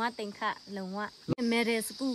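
Short spoken words in a high voice, over a steady high-pitched drone of insects.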